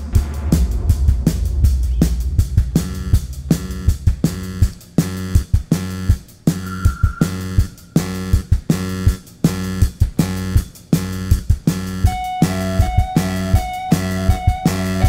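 A live indie rock band playing the instrumental opening of a song: a steady drum-kit beat with bass and electric guitar. A higher line of held notes comes in about twelve seconds in.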